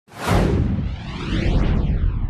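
Whoosh sound effect for a broadcast title graphic: a loud rush with a deep rumble under it and a sweeping, jet-like pitch that closes in about a second and a half in.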